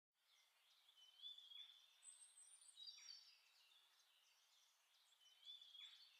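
Faint bird chirps and whistles over near silence: a few short high whistled phrases, some sliding in pitch, about a second in, around two to three seconds, and again near the end.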